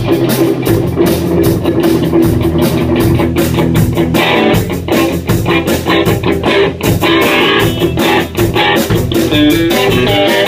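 A small rock band playing live, electric guitar and drum kit, with quick, dense drum and cymbal hits: a song deliberately sped up to a fast tempo.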